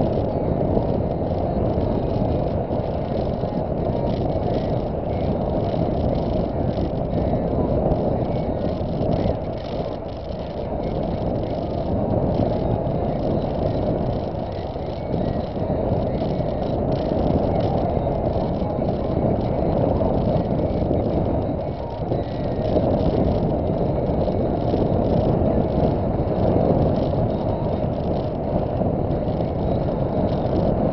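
Steady road and engine noise of a car driving, heard from inside the cabin through a dashcam microphone, with small swells and dips in level.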